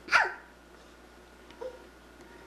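A single short, loud bark, falling in pitch, just after the start. A much softer short sound follows about a second and a half in.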